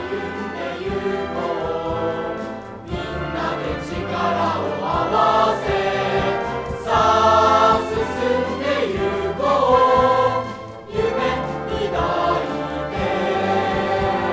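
Background music with choral singing: several voices holding sustained notes that change every second or so.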